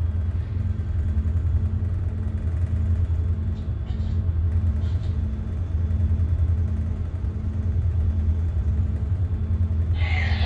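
Tugboat's diesel engines running steadily, a deep drone heard inside the wheelhouse, with a faint pulsing about twice a second.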